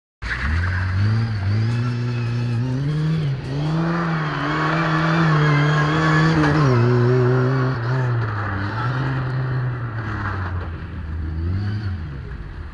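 A Lada 2107's four-cylinder petrol engine running hard as the car drives past. Its pitch rises and drops several times as it is revved and let off. A louder rushing noise joins it between about four and seven seconds in.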